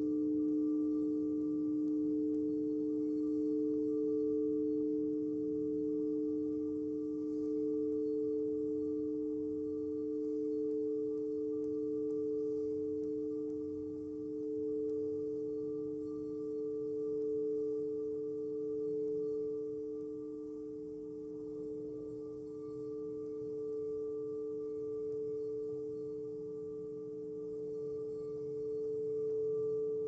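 Singing bowls ringing in two long, steady overlapping tones, one lower and one a little higher, with a slow, gentle swell and dip in loudness.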